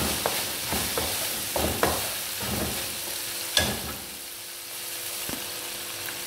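Chicken and peas sizzling in a non-stick wok while a wooden spatula stirs them, knocking and scraping against the pan several times, with one sharper knock a little past halfway.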